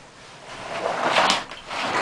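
A heavy 12 V, 140 Ah lead-acid battery being dragged and turned by its handle across cardboard on the floor: a scraping slide that builds to its loudest about a second in, then fades.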